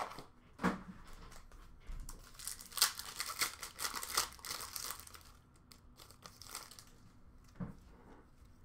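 Foil wrapper of a 2021-22 Upper Deck Series 1 hockey card pack crinkling and tearing as it is ripped open by hand, with a busy run of crackles between about two and five seconds in and a few sharp clicks.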